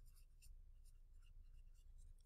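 Faint scratching of a pen writing on lined notebook paper, a string of short strokes as a word is written out.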